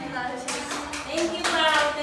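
A seated group of girls claps, starting about half a second in, while voices talk and call out over the clapping.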